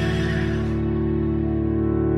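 Background music without vocals: steady held notes, with the top end fading away about a second in.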